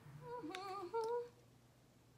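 A woman humming a few short notes with a wavering pitch, lasting about a second, with a couple of small clicks among them.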